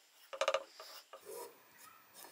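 Fingers rubbing a paper knife template flat onto steel bar stock: a short, scratchy run of rubbing strokes about half a second in, then a softer rub about a second later.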